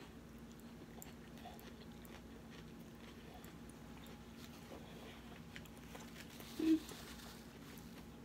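Faint close-up chewing of a mouthful of salad with romaine lettuce: scattered small wet clicks and crunches over a steady low hum. A short hummed 'mm-hmm' comes near the end.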